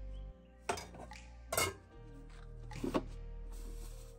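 A metal serving spoon clinking against metal pots and a plate as food is dished out: a few short, sharp clinks, over background music with a steady bass line.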